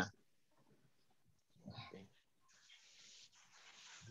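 Near silence on the call line, broken by one faint short sound a little under two seconds in and a fainter brief hiss after it.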